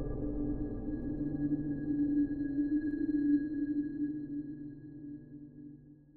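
Closing note of a dark horror ambient piano piece: a low, heavily reverberant chord struck just before, ringing on with a steady hum and slowly fading away to almost nothing by the end.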